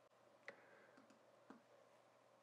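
Near silence broken by two faint, short clicks from a computer mouse, about a second apart.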